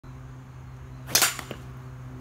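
A golf driver striking a ball with a sharp crack about a second in, followed by two much fainter knocks a few tenths of a second later.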